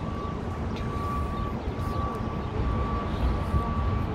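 Steady city street traffic noise, with a thin, steady high tone running over it that breaks off for a moment about a second and a half in.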